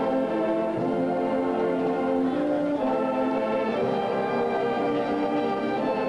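Brass band playing slow, held chords that shift every second or two, with low brass underneath.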